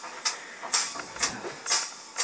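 A climber breathing hard right after a long climb: quick, regular, hissing breaths about twice a second as he catches his breath after being pumped.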